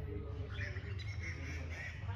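Birds chirping over a steady low background hum.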